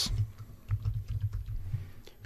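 Computer keyboard typing: a run of separate key clicks as a word in the code is replaced.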